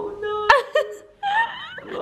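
People's voices in playful back-and-forth: a drawn-out vocal sound held at one pitch, a single sharp click about half a second in, then more voice.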